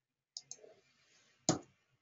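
Computer mouse button clicking: a quick pair of clicks, then a single louder click about a second later.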